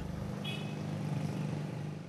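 Street traffic with motorbikes passing and a steady low engine hum, and a short high beep about half a second in.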